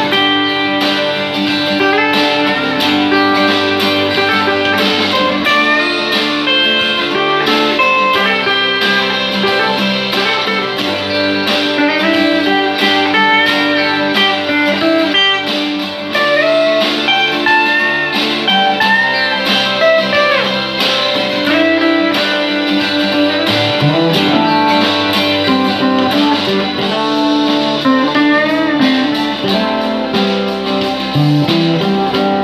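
Electric guitar playing a slow single-note melody with string bends and vibrato, over a steady low bass part that changes every few seconds.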